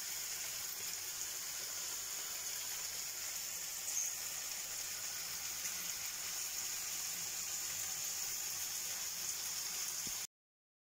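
Steady, even hiss, strongest in the high range, with one faint tick about four seconds in.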